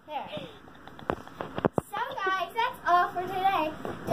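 A child's voice, untranscribed speech or vocalising, from about halfway in, after a few light knocks.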